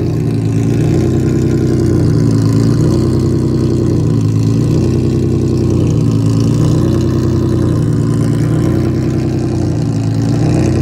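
Infiniti G37S's VQ37VHR V6 idling steadily through a custom 3-inch exhaust whose carbon fibre muffler has blown apart, its packing hanging out. The note is a low, even drone with a slow waver every two seconds or so.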